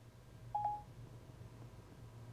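Siri's short electronic beep from an iPhone about half a second in. It marks that Siri has stopped listening after the home button is let go and is fetching the answer. A faint low steady hum sits beneath it.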